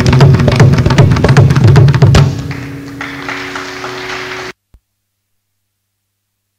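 Carnatic concert percussion: a mridangam plays a fast run of strokes that ends on a sharp final stroke about two seconds in. A steady tanpura drone with a soft rustling noise over it follows, and the sound cuts off to silence about four and a half seconds in.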